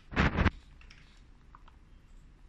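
Plastic case of a digital panel indicator handled in the hands: a short loud burst of rubbing and clattering early on, then a couple of faint clicks a little past the middle.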